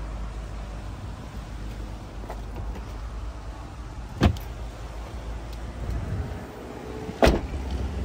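A knock about four seconds in as the Toyota Prius's cargo-area cover is handled, then a louder, sharper slam about three seconds later as the rear hatch is shut.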